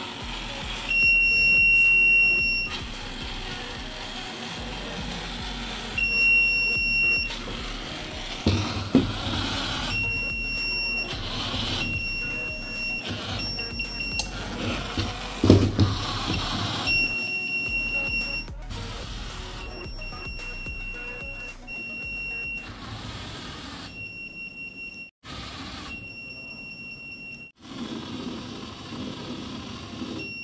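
Piezo buzzer on an Arduino anti-sleep robot car sounding a steady high-pitched beep about a dozen times, each beep lasting about one to one and a half seconds with uneven gaps. This is the project's alarm signalling that its sensor has been triggered and the motors are being stopped. Two sharp knocks are heard around the middle.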